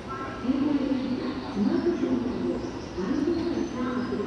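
A pigeon cooing: three low calls in a row, about a second and a half apart.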